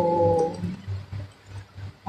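A woman's drawn-out spoken "so…", the vowel held steady for under a second, then a faint low hum of room noise.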